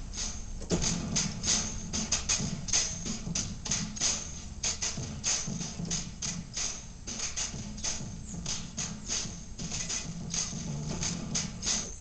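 A sampled hip-hop drum beat played back from a Yamaha Motif keyboard workstation, starting about a second in. It is a steady loop of fast, sharp percussion hits, several a second, over a low beat.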